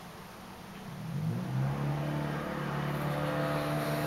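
A motor starting up about a second in, its hum rising quickly in pitch and then running steady and louder.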